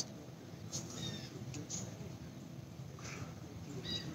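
Quiet background with a few faint, short, high chirps about a second in and a faint blip near three seconds.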